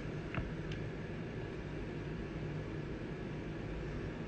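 Low, steady room noise, a hum and hiss, with a faint tap about half a second in as a trading card is handled on the table.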